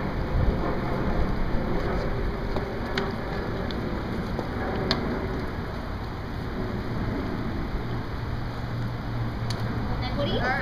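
Steady rushing background noise with a low rumble, like wind buffeting the microphone, with a few faint clicks.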